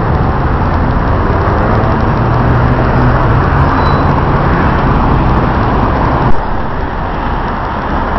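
Street traffic, with a city bus's engine running close by over a steady rumble of road noise. A short sharp click comes about six seconds in, after which the noise is a little lower.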